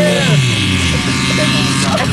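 A demolition derby car's engine running under load, its pitch dropping about half a second in as the revs fall, then holding steady and lower.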